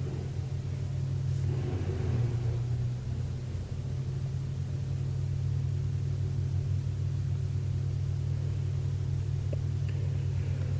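A steady low droning hum, even throughout, with a slight extra murmur in the first couple of seconds.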